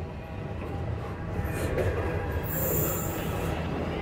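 Freight cars rolling over a steel girder bridge: a steady low rumble of wheels on rail, with a high-pitched wheel squeal that starts about two and a half seconds in and lasts about a second.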